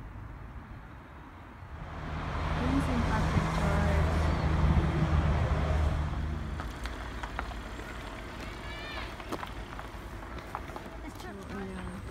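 A motor vehicle passing close by: its engine hum and road noise swell about two seconds in, peak, and fade away by about six and a half seconds.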